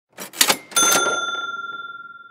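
An intro sound effect: a few quick sharp clacks, then a single bell ding that rings out with a clear tone and slowly fades, like a cash register's 'ka-ching'.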